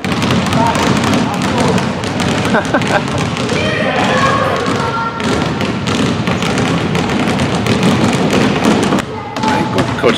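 Several basketballs being dribbled on a hardwood gym floor: a dense, overlapping run of bounces and thuds, with children's voices calling out over them.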